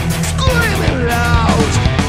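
Recorded power metal music: full band with bass and busy drums, and a lead melody that slides and bends in pitch.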